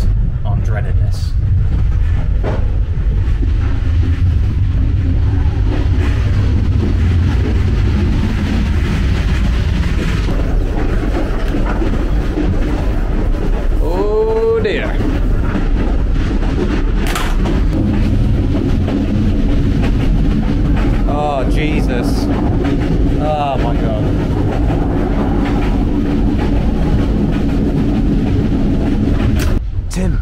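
Steady low rumble of a moving sleeper train, heard from inside the carriage. A few short pitched sounds rise and fall about halfway through, and again several seconds later.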